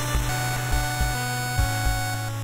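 Background music with a steady beat and held notes that change in steps.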